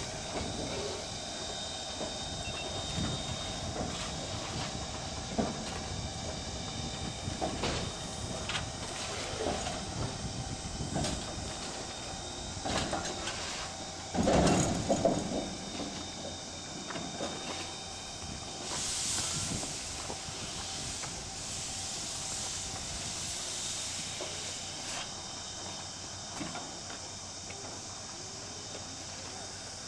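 Steam locomotive standing on a turntable while it is turned, its steam hissing steadily with scattered knocks and clanks. A loud burst comes about halfway through, and a strong gush of hissing steam follows a few seconds later.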